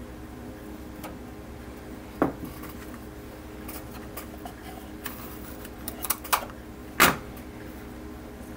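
Small knocks and clicks of hands, a tool and plastic model parts being handled while masking tape is laid along a plastic model ship's deck edge: one knock about two seconds in, a few light ticks later, and the loudest knock near the end, over a steady low hum.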